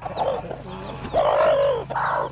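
Broody hens scolding with a run of clucks and drawn-out calls, the longest one about halfway through. It is their defensive warning at an intruder coming near their chicks.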